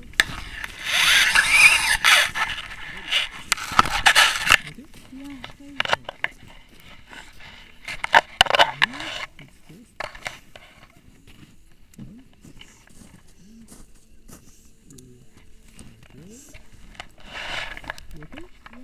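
Loud rustling and scraping noise as a tandem paraglider comes in to land on snow, in bursts over the first few seconds, again about halfway through and briefly near the end, with quiet voices talking in between.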